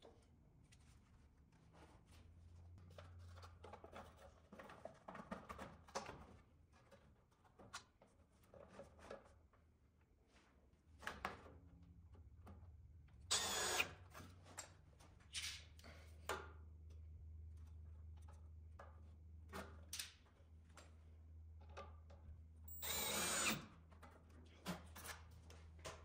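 Cordless drill driving screws through a plastic washing machine outlet box's mounting bracket into a wooden stud, in two short runs, one about halfway through and one near the end. Handling knocks and a faint low hum fill the gaps.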